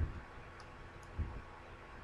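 A few computer mouse clicks, with two dull low thuds about a second apart and fainter sharp ticks between them.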